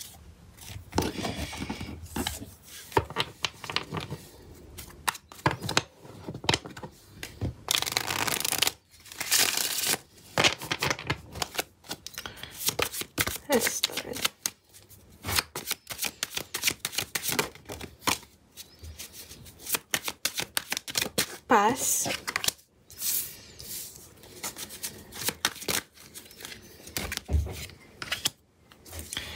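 A tarot deck being shuffled and cards dealt out on a wooden table: a busy run of short card flicks and riffles, with a longer stretch of shuffling about a third of the way in.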